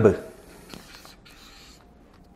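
Felt-tip marker writing on a whiteboard: faint scratchy strokes as a word is written, just after a man's spoken word trails off at the very start.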